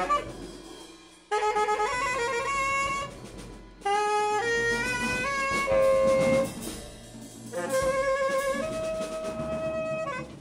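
Tenor saxophone playing jazz phrases of held notes that step up and down, in three phrases with short pauses between them. A drum kit plays sparsely underneath.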